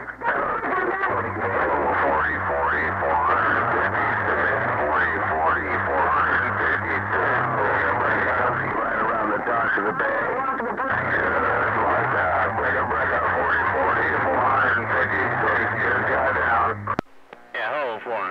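A strong CB radio transmission heard through the radio: a station keyed down, sending a heavily echoed, distorted voice with warbling whistles over a steady hum. It cuts off suddenly about seventeen seconds in, when the station unkeys.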